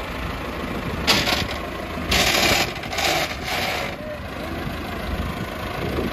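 Massey Ferguson 385 tractor's four-cylinder diesel engine idling steadily, with a few short rushing noises over it about a second in and again two to three and a half seconds in.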